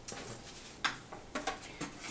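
Handling noise of a paper sheet and a picture frame's backing board on a tabletop: light rustles and taps, with a sharper knock a little under a second in and a few quick clicks in the second half.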